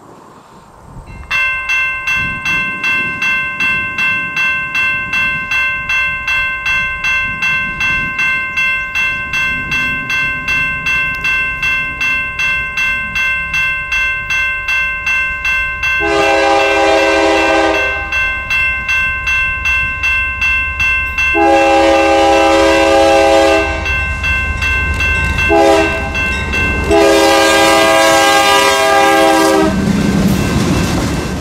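A grade-crossing bell rings about twice a second from just over a second in. Over it the lead GE freight locomotive's air horn sounds the crossing signal, long, long, short, long, with the train's rumble building as it reaches the crossing.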